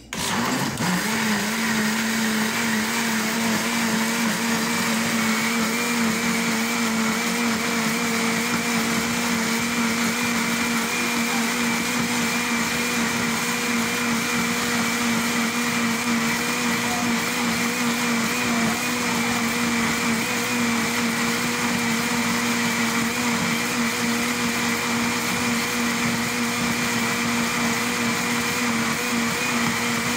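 Countertop blender switched on and quickly spinning up to a steady speed, then running continuously with an even motor hum. It is mixing a liquid bread batter of milk, oil and butter.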